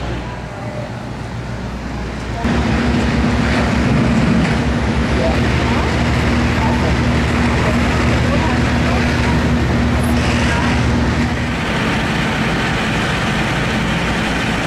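Diesel engines of fire trucks running steadily, a deep hum with a held low tone, with the noise of hoses and the scene over it. The hum comes in abruptly about two and a half seconds in, louder than the quieter stretch before it.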